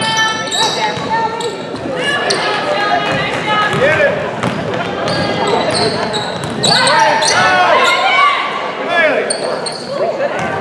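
Game sounds in a large gym: a basketball dribbled on the hardwood floor under many overlapping voices of players and spectators calling out.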